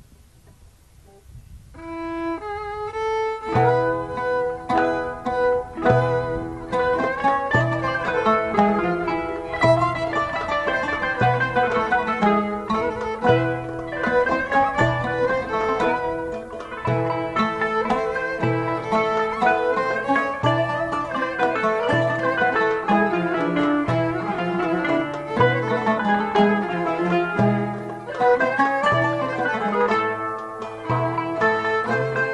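A traditional Greek and Ottoman-style string ensemble begins a piece: plucked strings enter about two seconds in, then the full band plays from about three and a half seconds. Violin and kanun carry the melody over ouds, guitar and accordion, with a steady low beat beneath.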